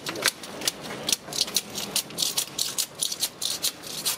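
Bladed scraper scraping and chipping paint coating off a textured exterior wall in quick, irregular strokes, about four a second. The coating has been softened by two coats of paint stripper left for 24 hours and comes away in sheets.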